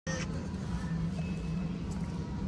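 Steady low mechanical hum of an aerial ropeway (cable car) system, its cable and drive machinery running. The sound cuts in suddenly at the very start.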